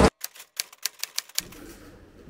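Typewriter keystroke sound effect: a quick run of about eight sharp clacks over about a second and a half, in dead silence, followed by faint room tone.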